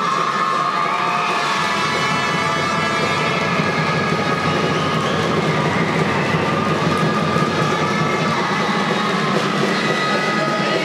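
A crowd in a sports hall cheering and clapping, a loud, steady din with sustained tones running through it.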